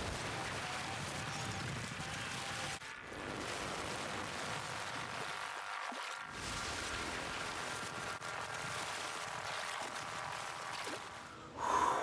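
Wildlife-film soundtrack of water splashing and churning as antelope and wildebeest at a waterhole scatter from a crocodile's lunge, a steady noisy rush broken by two brief dips.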